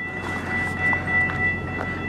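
Freight train of tank cars and covered hoppers rolling along the tracks: a steady rumble of wheels on rail with a thin high-pitched whine and a few light clicks.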